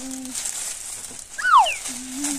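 Plastic gift bag crinkling as a child rummages in it to pull out a present. About a second and a half in, a single loud, high chirp sweeps quickly down in pitch.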